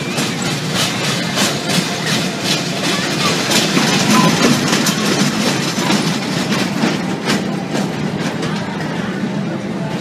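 Small family roller coaster train rattling and clacking along its steel track, the wheel clicks coming thick and fast and loudest as the train passes close about halfway through, then thinning out near the end.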